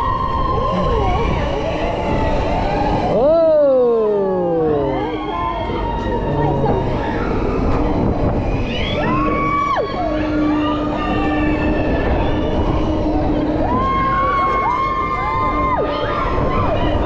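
Riders screaming and whooping as a spinning, flipping theme-park gondola ride turns them upside down: high held screams that start and stop sharply, and one long falling scream about three seconds in, over the steady rush of the ride.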